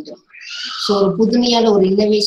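A woman's voice speaking a lecture. After a brief pause it resumes with a short breathy hiss, then about a second in her speech starts again.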